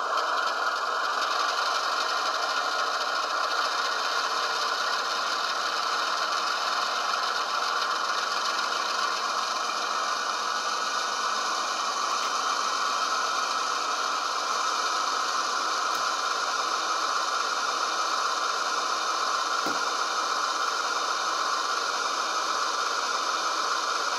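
Tsunami2 sound decoder in an HO scale Athearn Genesis ES44DC model, playing the GE diesel prime mover run straight up to notch 8, full throttle, through the model's small speaker. The engine sound holds steady at that notch.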